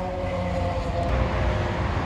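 Steady outdoor traffic rumble with a faint hum.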